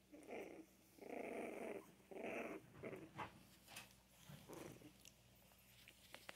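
Young Scottish terrier puppies, about three and a half weeks old, making small growls and grunts as they play: several short bursts, the longest about a second in, fewer and softer in the second half.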